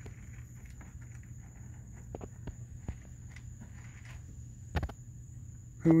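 Faint footsteps and light rustling in grass: scattered soft taps, with a louder double knock near the end, over a steady low hum.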